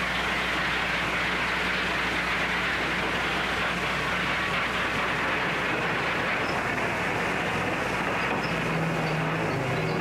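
Steam train running: a steady rushing noise with a low hum beneath it.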